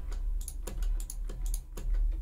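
Computer keyboard and mouse clicking at a desk: several short, irregularly spaced clicks over a steady low hum.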